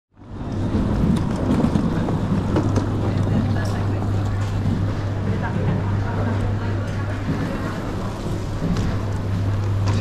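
Airport terminal ambience: a steady low hum under a wash of indistinct crowd chatter, with scattered faint clicks.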